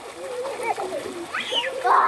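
Swimmers' voices chattering and calling out across a pool, one high call rising and falling. Near the end comes a loud splash of water.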